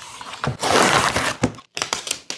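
Cardboard and paper stuck down with cured resin squeeze-out being torn and peeled away by gloved hands: one loud rip lasting about a second, starting about half a second in, then a few short crackles.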